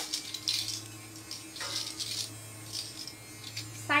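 Clothes on plastic hangers being handled: a sharp click at the start, then soft, intermittent rustling of fabric as a knit sweater is taken from the rack, over a steady low electrical hum.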